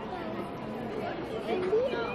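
Indistinct background chatter of several voices, with no clear words.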